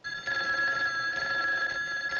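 Payphone bell ringing in one continuous, unbroken ring.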